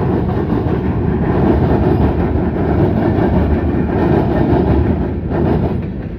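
Freight train cars rolling past on the track, a steady rumble of wheels on rail that starts to fade near the end as the last car goes by.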